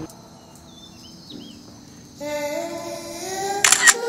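A camera shutter clicking sharply near the end, the loudest sound here. Before it, a quiet stretch, then from about halfway a held, slowly rising tone of the background music.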